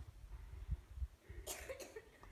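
A person coughing once, briefly, about three quarters of the way in, over a faint low rumble.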